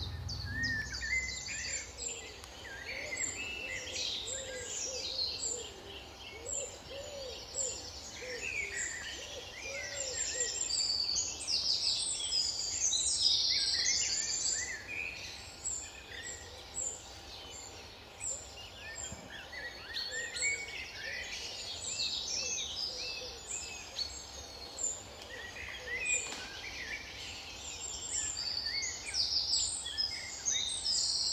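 Several songbirds singing at once, a dense run of overlapping high chirps and trills, with a few lower repeated calls mixed in. A steady low rumble lies underneath.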